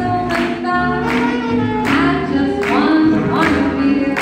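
Live swing jazz band playing dance music with a steady beat about two strikes a second, with horns and an upright bass.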